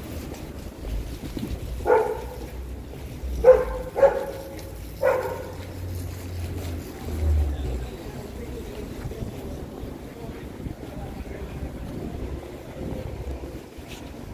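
Street ambience with a low rumble of passing traffic and wind on the microphone, broken by a dog barking four short times between about two and five seconds in.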